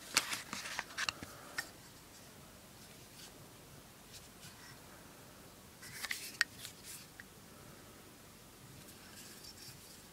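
Handling noise: a quick run of light clicks and rustles in the first second and a half, then another short cluster about six seconds in, with quiet room tone between.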